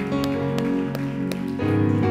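Soft live worship music on keyboard: sustained chords held under the service, with the chord changing about a second and a half in and a few light ticks over it.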